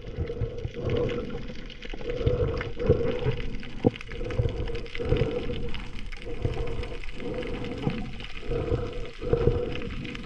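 Underwater sound picked up by a camera in its housing: water moving and gurgling, with a steady hum underneath and scattered short knocks and clicks.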